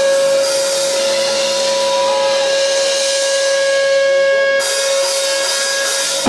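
Live rock band in a break: a single held note rings steadily over a hiss of cymbals, without drum beats underneath.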